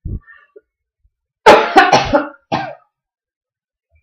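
A man coughing: a loud run of three or four coughs about halfway through, after a soft low thump at the start.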